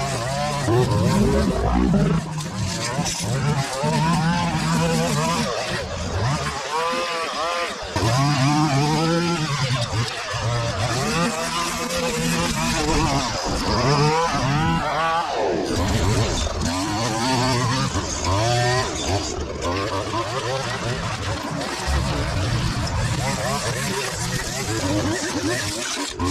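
String trimmer running and cutting long grass, its motor pitch rising and falling over and over as the head sweeps through the grass.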